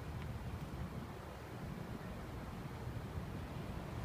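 Steady low rumble of outdoor ambience with no distinct events.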